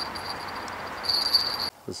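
A pair of small bite-alarm bells clipped to a feeder rod tip ringing faintly: a thin, high jingle that swells about a second in, the sign of a fish pulling at the bait. It cuts off suddenly just before the end.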